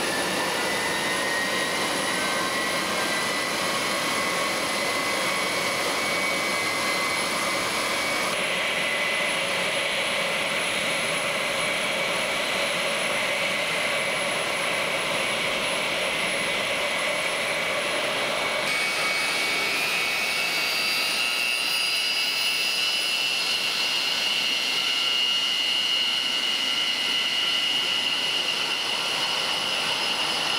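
Air Force One's jet engines, on a Boeing 707-based VC-137, running on the ground with a steady high whine as the plane readies to taxi. The whine rises in pitch slightly near the start and again about two-thirds of the way through, with a couple of abrupt shifts in tone.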